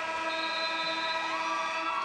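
Arena game horn marking the end of the game as the clock runs out: one long, steady blast of several tones at once, lasting about two seconds.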